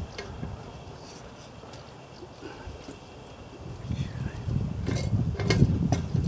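Four-inch steel G-clamp being screwed down onto a plank on a workbench, with a couple of small sharp clicks about five seconds in. A low rumble rises from about four seconds in.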